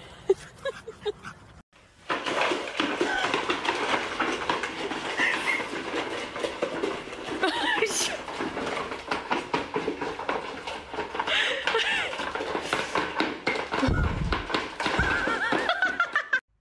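People talking and laughing in a small room, with puppies heard among the voices.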